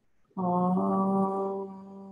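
A woman's voice chanting a long, steady Om on one held pitch, starting about a third of a second in and closing toward a hum partway through.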